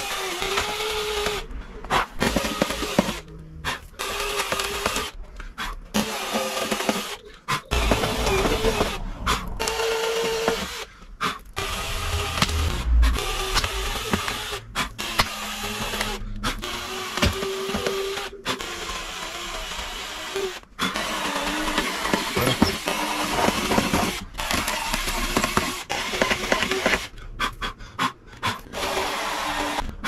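Cordless drill boring pilot holes into film-faced plywood, its motor whining in repeated bursts with short stops between holes.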